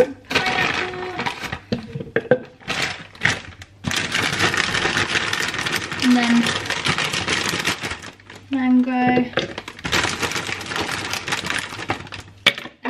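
Frozen fruit chunks tipped from a crinkling plastic bag, rattling into a plastic NutriBullet blender cup in two long runs. A few brief vocal sounds come in between.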